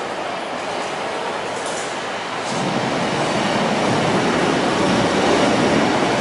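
A diesel multiple unit train pulling slowly into the platform, its engine and wheel noise steady at first and growing louder from about two and a half seconds in, under the station's arched roof.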